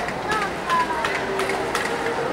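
Indistinct chatter of people in a large hall, voices overlapping, with a few short clicks scattered through it.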